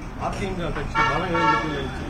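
A man talking, with a short steady tooting tone about a second in that holds for about half a second before stopping.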